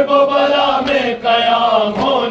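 Male chanting of an Urdu noha, a mourning lament, drawn out on long wavering notes between the sung lines, with a short break a little past the middle.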